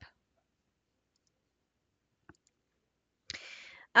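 Near silence broken by a single faint mouse click about two seconds in, as the print orientation is switched to landscape. A short breath follows near the end.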